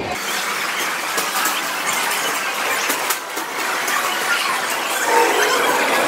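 Loud, dense arcade din from many electronic game machines sounding at once, with a steady wash of noise, scattered clicks and clatter. A few held electronic tones come in near the end.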